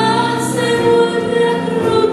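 A woman singing a slow Christian song in Romanian into a handheld microphone, holding long notes over musical accompaniment.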